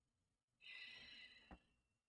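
Near silence, with a faint intake of breath a little over half a second in and a small click about a second and a half in.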